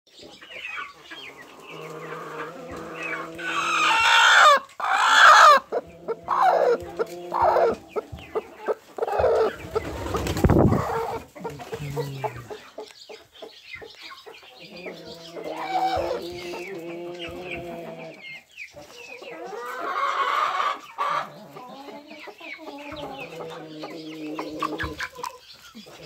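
A flock of barn chickens clucking and squawking, with the loudest calls about four and five seconds in. A low rumble of camera handling comes around ten seconds.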